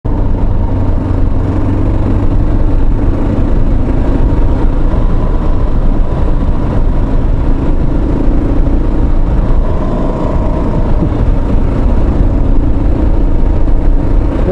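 Motorcycle engine running and wind rushing past while riding, picked up by a microphone inside the rider's helmet; a loud, steady rumble with no break.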